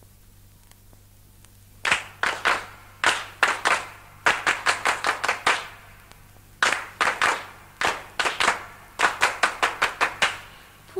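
Faint steady hum and hiss for about two seconds, then rhythmic handclaps in short irregular groups, the percussion intro of a song from an old cassette recording.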